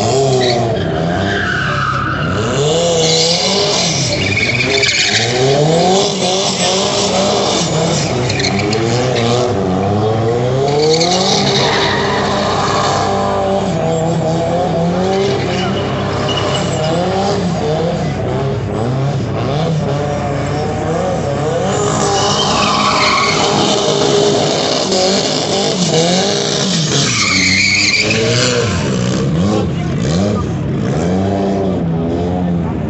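Chevrolet Chevette wagon doing a long burnout and drifting in circles: the engine revs up and down at high rpm in repeated pulls while the rear tyres squeal and skid almost without a break.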